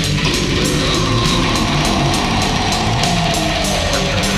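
Heavy metal music: distorted electric guitars over a fast, steady drumbeat, with a long note gliding slowly downward in pitch from about a second in.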